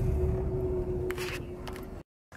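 Car cabin noise: a low rumble with a steady hum, fading over two seconds, with a couple of brief rustles about a second and a half in.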